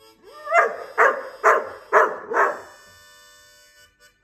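A dog barks five times, about two a second, the first bark rising out of a short upward whine, over music.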